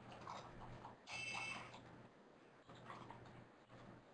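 Near silence: faint room tone, with a brief, faint high-pitched sound about a second in.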